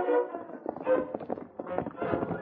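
A brass music bridge dies away, then horses' hoofbeats sound in a run of quick knocks: a radio-drama hoofbeat sound effect for riders on the move.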